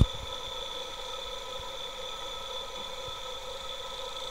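A 360-watt electric motor running steadily on a pack of 18650 lithium-ion cells, giving a constant whine of several steady tones over a faint hiss.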